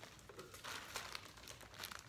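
Plastic bagging crinkling faintly as packed gear is handled and lifted out of a cardboard box, picking up about half a second in.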